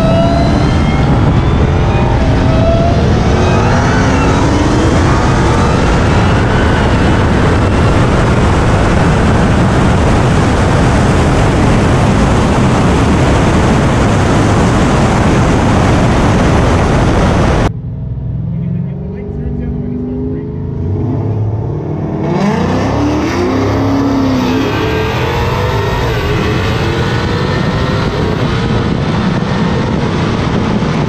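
Supercharged Dodge Challenger Hellcat V8 engines at full throttle in a roll race, buried in heavy wind rush, with engine pitch climbing through the gears. About 18 s in the sound cuts abruptly to a quieter stretch. From about 22 s the engine and wind noise return with pitch swinging up and down.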